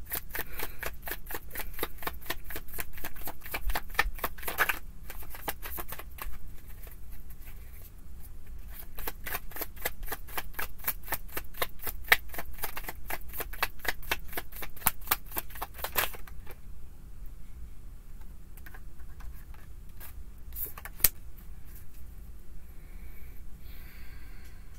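A tarot deck being shuffled by hand, overhand: a rapid run of card-on-card clicks, several a second. The clicks stop about two-thirds of the way through, leaving only a few scattered taps.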